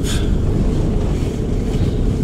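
Van's engine and tyre rumble heard inside the cab while driving, a steady low drone.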